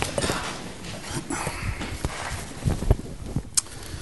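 People settling into their seats in a meeting room: chairs shifting and a few footsteps, heard as scattered knocks and thumps with some rustling.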